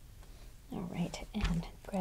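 A woman speaking quietly, starting under a second in; before that, only faint room tone.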